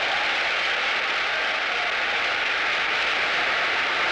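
A large church congregation applauding, a steady, dense noise.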